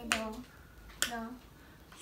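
Thin sticks tapping on a cardboard practice xylophone: two light clicks about a second apart. Each click is followed by a child's short sung note as she sings along with her practice.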